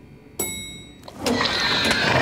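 A cartoon elevator bell dings once about half a second in, its clear tone fading over half a second. About a second later a louder rushing noise builds as the elevator doors open.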